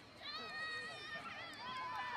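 People yelling during a football play: a long, high-pitched shout starts about a quarter second in and is held for about a second, followed by more shorter yells.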